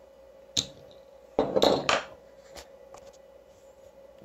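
Empty glass beer bottle set down on a tabletop: a sharp clink about half a second in, then a louder clatter of glass a second later, and a couple of light taps.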